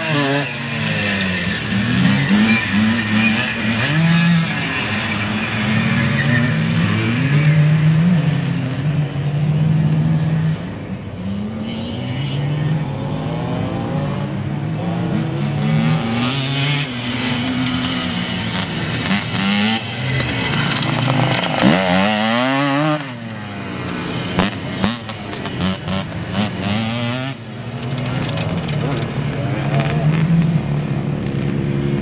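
Off-road motorcycle engines revving up and down as riders work along a dirt course, with one bike passing close a little over twenty seconds in.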